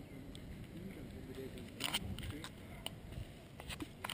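Faint background voices over a low outdoor murmur, with several light, irregular clicks in the second half.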